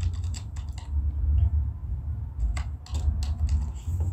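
Computer keyboard typing in two short runs of keystrokes, one at the start and another about two and a half seconds in, over a steady low hum.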